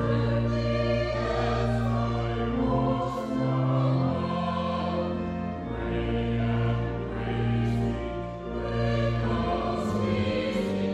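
Two women singing a hymn together over an instrumental accompaniment whose sustained low chords change every second or two.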